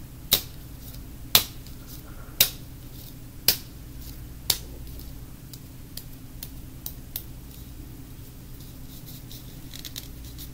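A small yellow softball-style ball tossed up and caught in the hand, five sharp slaps about a second apart. After that come only faint ticks as the ball is turned in the fingers.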